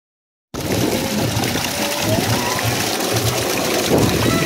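Silence, then about half a second in, pool water splashing and fountain jets spraying, with music playing and people's voices behind it.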